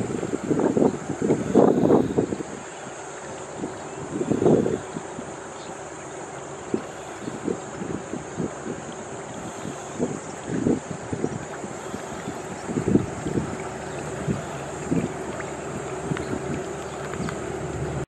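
Raw sewage overflowing from a manhole and running over the ground, a steady wash of flowing water. Gusts of wind buffet the microphone, heaviest in the first two seconds and again about four and a half seconds in, with scattered short knocks throughout.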